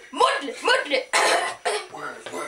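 Voices chanting French parody lyrics unaccompanied, in short rhythmic bursts, with a breathy noise about a second in.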